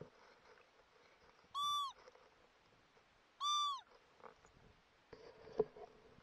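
Two short, identical high calls, each rising then falling in pitch, about two seconds apart, followed by a few faint clicks and one sharp click near the end.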